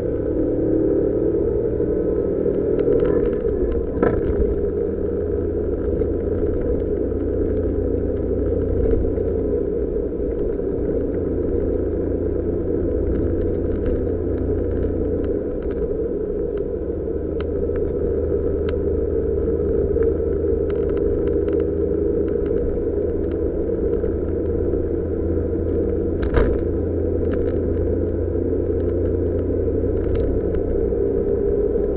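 Suzuki Jimny JB23's 660 cc turbo three-cylinder engine and tyre noise heard inside the cabin while cruising: a steady drone with a low rumble. There are two short knocks, one about four seconds in and one late on.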